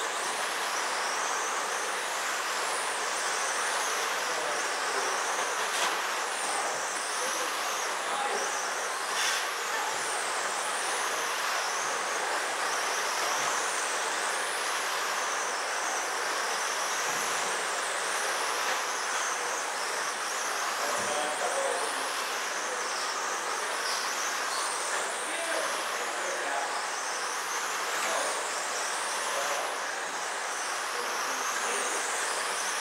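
Several 1/10-scale electric RC sprint cars racing on a dirt oval: their electric motors whine high, rising and falling over and over as the cars speed up on the straights and slow for the turns, over a steady hiss.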